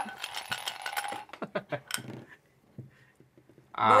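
Dice rattling in a clear cup as it is shaken, a rapid run of clicks that stops about two seconds in.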